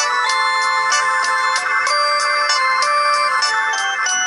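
Instrumental break of a karaoke backing track: a thin, electronic-sounding keyboard melody over held chords with a steady beat and little bass.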